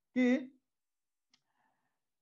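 A man says one short word, then near silence, with a faint click about a second in and a brief faint scratch of a marker on a whiteboard.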